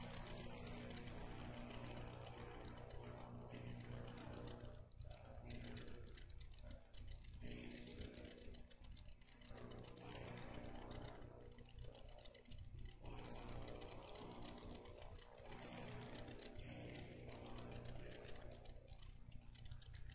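Quiet room tone with a steady low electrical hum and faint scattered rustle.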